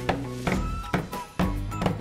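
Background music with a steady beat, over small hammer taps pounding leaves into cloth about twice a second, done in time with the beat.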